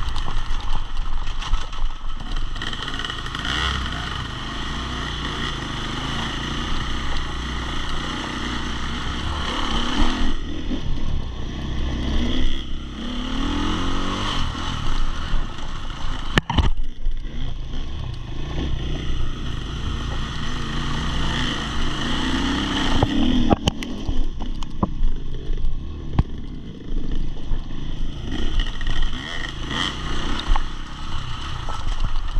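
KTM enduro motorcycle engine running under load on a dirt trail, its revs rising and falling as the throttle is worked. Two sharp knocks stand out, about halfway through and again a little later.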